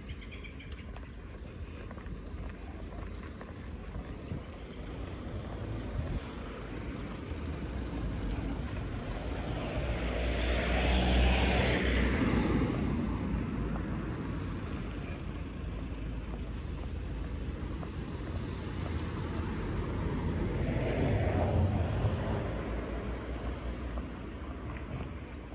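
Road traffic: two vehicles pass one after another, each swelling and fading away. The first is the louder, with a deep rumble, peaking about halfway through; the second passes near the end.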